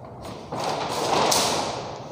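A person moving at a chalkboard: a dull thump about half a second in, then about a second of rustling with a brief sharp scrape in the middle.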